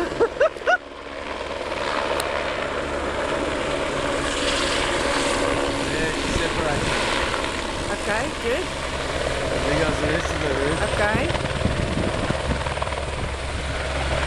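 Helicopter flying close by, its rotor and engine running loud and steady, swelling over the first couple of seconds and then holding. A few short shouts come at the very start.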